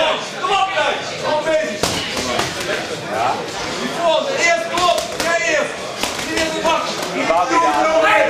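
Men shouting encouragement in Dutch in a large hall, with several sharp smacks of boxing gloves landing, the loudest about two seconds in.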